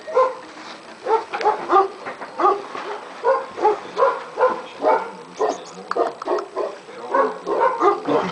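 Tibetan mastiff puppy crying in a steady run of short, high calls, about two or three a second.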